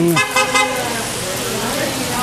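City street traffic noise: a steady hiss of car tyres on a wet road, after a few spoken words at the start.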